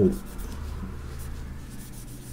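Faint handling noise of hands moving and shifting a Leica M3 camera body, fingers rubbing over it, over a low steady background hum.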